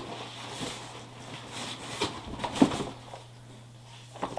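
Cardboard packaging scraping and rustling as a tightly wedged product box is worked loose and lifted out of a packed cardboard shipping box, with a few short knocks, the sharpest a little over halfway through; it quiets in the last second.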